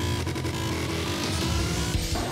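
Live rock band playing, with a distorted, sustained sound and a held tone slowly rising in pitch through it.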